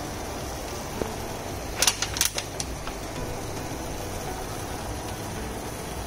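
Chicken simmering in sauce in a pan, a steady low hiss, with a few sharp clicks of kitchen tongs against the pan about two seconds in.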